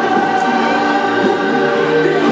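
Music with a choir singing long held notes, played loud.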